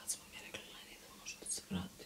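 A woman whispering a few soft words.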